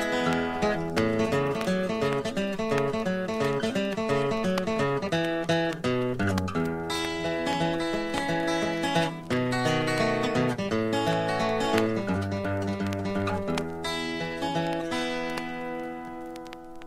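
Old-time blues instrumental break with no singing: acoustic guitar picking a melody over a moving bass line.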